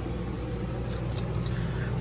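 Steady low background hum with a faint rustle of cardboard LP jackets being handled about a second in.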